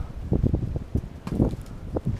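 Wind rumbling on the microphone, with a few faint soft knocks.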